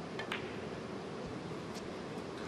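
Snooker cue tip striking the cue ball, then a sharp click a moment later as the cue ball hits the blue, over a steady quiet hiss of the hushed arena. A fainter knock follows near the end.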